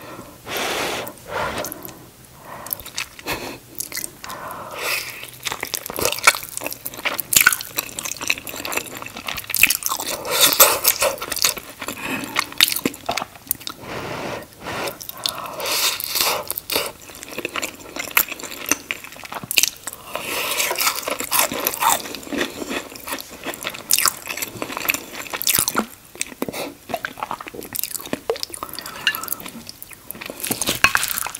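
Close-miked chewing and biting of cheesy shepherd's pie: soft mashed potato, ground beef and melted cheese, with wet mouth smacks and some crunch from the crisped cheese crust. The sounds come as a continuous, irregular stream of clicks and squelches.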